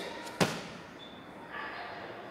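A single sharp thump on a hard tiled floor about half a second in, with a short echo: a Bajiquan foot stamp.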